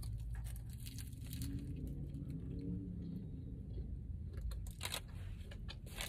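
Close-up chewing of a bite of crisp fried apple pie: soft crunches and small mouth clicks, over a low, steady hum of the car cabin.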